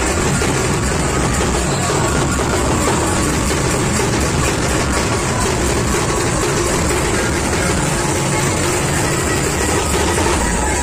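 Loud, continuous music with a steady level.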